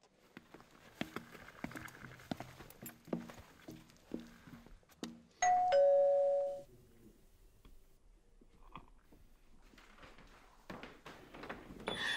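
Two-note doorbell chime about halfway through: a higher tone and then a lower one ringing together for about a second. Before it comes a string of soft thumps.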